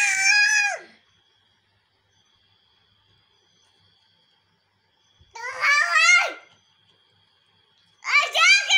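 A baby's high-pitched squeals. One held squeal ends about a second in, and a shorter one comes about five and a half seconds in, falling away at its end.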